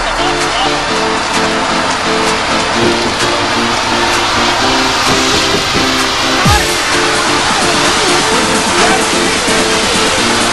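Electronic dance music with a short synth figure repeating in a steady rhythm, over the steady road noise of a moving car.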